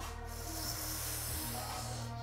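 Quiet background music with steady low notes, under a soft rushing hiss that fades away a little before the end.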